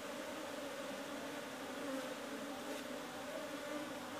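A colony of Asian honey bees (Apis cerana) buzzing in a steady, even hum.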